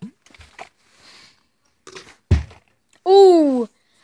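A plastic Smartwater bottle, flipped, landing upright on carpet with one dull thud about two seconds in. A loud whoop follows about a second later.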